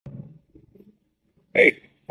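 Mostly quiet with a brief faint low sound at the start, then a man calls out a short "Hey" about one and a half seconds in.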